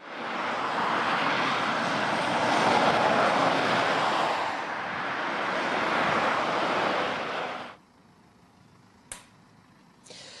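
Road traffic passing close by: a loud, steady rush of tyre and engine noise that swells, eases and swells again. It cuts off abruptly near the end into near silence broken by a single brief click.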